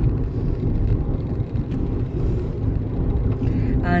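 Steady low rumble of a moving car heard from inside the cabin: road and engine noise while driving.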